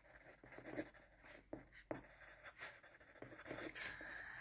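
Faint scratching of a ballpoint pen writing on paper in short, irregular strokes, with a couple of light clicks in the middle.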